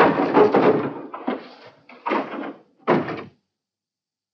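A wooden plank door rattled and worked in four noisy bursts, the first and longest about a second. It stops about three and a half seconds in.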